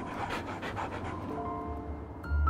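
Dogs panting in quick, even breaths. Soft held music notes come in about two-thirds of the way through.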